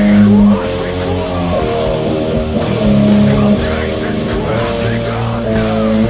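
Heavy metal played on distorted electric guitar, with a low riff of held, changing chords and notes that slide and bend higher up.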